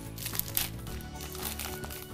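Crinkling and crackling of a plastic bubble-lined mailer as it is cut open and its sides pulled apart by hand, with background music playing.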